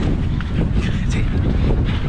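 Wind buffeting the microphone of a handheld camera carried by a jogging runner, a steady low rumble.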